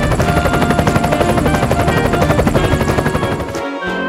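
Helicopter rotor sound effect, a fast, steady chopping over background music; it cuts off shortly before the end.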